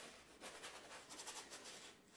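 Faint, quick scratchy strokes of a tool rubbing across a painter's canvas, coming in a loose run.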